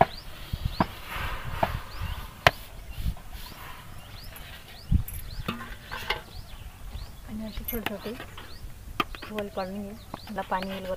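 Flour tipped into a metal pot of boiling water with a brief hiss, then several sharp knocks of metal utensils against the pot. Small birds chirp in the background.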